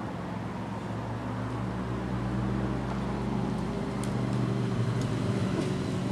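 A road vehicle's engine running, heard as a steady low hum that grows gradually louder.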